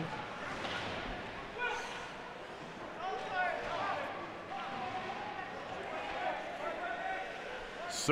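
Ice hockey arena sound during play: faint, scattered voices and shouts from the crowd and players over a steady background hum, with a few faint knocks of sticks and puck on the ice.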